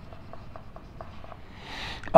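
Marker pen writing on a whiteboard: a run of faint, short strokes and taps, about five a second.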